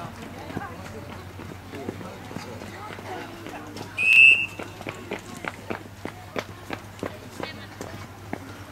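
A sports whistle blown once, a short, sharp, high blast about four seconds in, followed by the quick patter of children's feet running on the pitch, with faint voices in the background.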